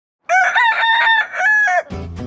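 A rooster crowing once, a single cock-a-doodle-doo lasting about a second and a half, with a short dip in the middle and a falling end. Acoustic guitar music comes in just as it ends.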